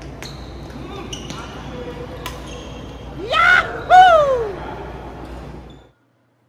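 Badminton rally: about four sharp racket strikes on the shuttlecock in the first half, some with a short ringing ping. Then two loud voice cries, the first rising in pitch and the second falling, before the sound cuts out abruptly near the end.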